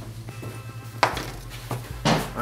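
A steady low electrical hum with one sharp click about a second in and two fainter clicks near the end.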